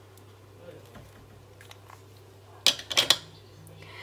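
Quiet handling of stationery, then a quick cluster of sharp plastic clicks and clacks a little under three seconds in, as a marker is capped and dropped into a clear acrylic holder or the budget binder is handled.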